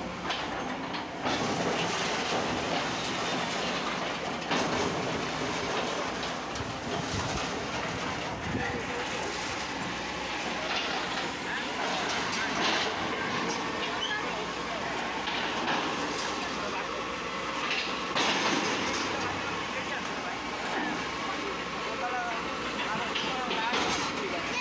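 Sumitomo hydraulic excavator running as it tears down a brick building, with repeated clattering and crashing of falling bricks and debris.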